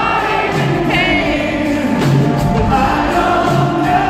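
Live rock band with a string orchestra playing, a lead singer singing over held orchestral notes and a bass line that repeats about once a second.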